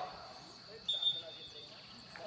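Quiet outdoor background with faint distant voices, broken about a second in by a short, high, steady whistle-like tone lasting under a second.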